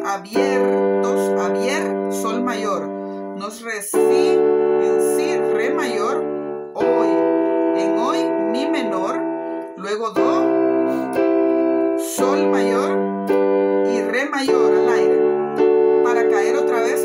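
Electronic keyboard with a piano sound playing sustained chords in G major (E minor, C, G, D), each held for two to four seconds. A voice sings the melody over the chords.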